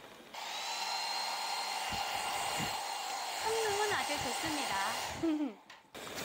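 Wall-mounted hotel hair dryer switched on and blowing steadily with a high whine, switched off shortly before the end.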